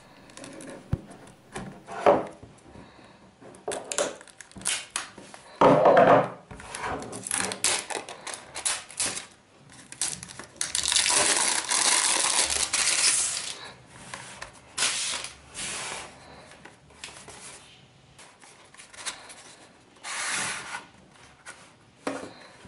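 Unboxing: a knife tip scraping and clicking as it slits the plastic shrink-wrap on a small cardboard box, then the cellophane being peeled off with a long crinkle about halfway through. Near the end comes the rustle of cardboard handling.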